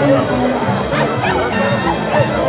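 A dog barking amid crowd chatter and music.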